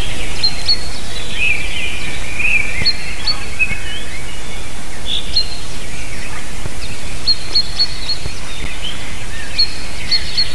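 Wild songbirds singing: scattered short, high chirps and warbling phrases from several birds, over a steady low rumble on the microphone.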